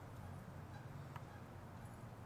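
Faint night-time background: a low steady hum with one faint click about a second in, and no sound from the light being filmed.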